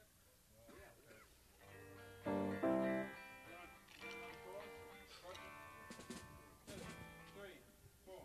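A guitar played in a recording studio between takes: a few louder chords about two seconds in, then quieter scattered notes, with faint voices in the room.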